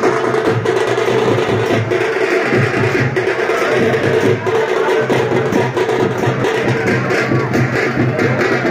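Loud, continuous percussion-led music: drums beaten in a busy rhythm with sharp, woody strokes.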